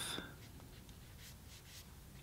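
Faint brushing of a watercolor brush on paper: a few soft, short scratchy strokes as the brush dabs darker green paint.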